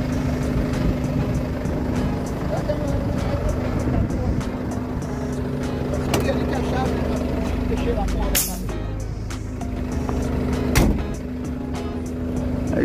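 Volkswagen Delivery tow truck's diesel engine idling with a steady low hum. Two sharp knocks sound about eight and a half seconds in and again near eleven seconds.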